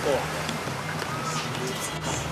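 A man's voice ends a word, then a steady low hum of background ambience continues under the pause in the dialogue.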